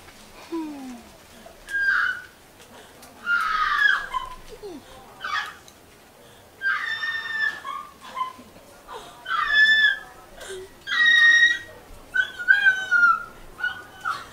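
A woman's voice crying out in high-pitched squealing wails, about seven short cries with pauses between, some bending in pitch.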